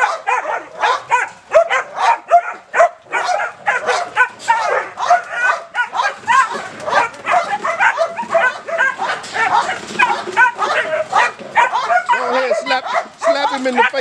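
Protection-bred puppy barking nonstop at a stranger tapping on its wire cage, short high barks several a second without a pause: the aggressive protective drive its handler calls being "on fire".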